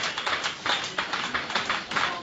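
Rapid, even percussive massage strikes on a person's back, about six short knocks a second.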